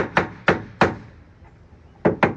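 A hammer tapping small brad nails flush into the wooden frame of a cabinet, four quick strikes in the first second, then a pause.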